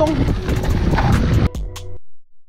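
Mountain bike rolling fast down a rough gravel track, its tyres rumbling over stones and the frame rattling, with wind buffeting the camera microphone. The noise cuts off suddenly about one and a half seconds in, giving way to a quieter steady hum.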